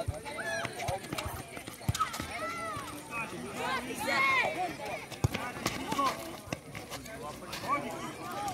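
High-pitched shouts and calls from players and onlookers during an outdoor futsal game, with sharp knocks of the ball being kicked and footfalls on the concrete court. The shouting is thickest in the first half.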